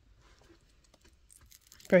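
Faint, scattered crunches and clicks of a person chewing a crisp fried chip, in the middle of the sentence "chips are… very crisp".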